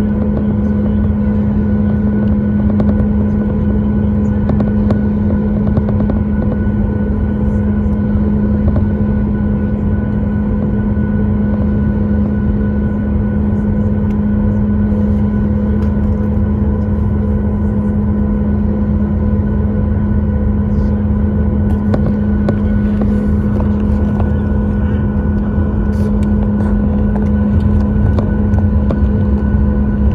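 Steady cabin drone of a Boeing 737-8 MAX taxiing, its CFM LEAP-1B engines at idle giving a constant low hum over the rumble of the aircraft rolling along the taxiway.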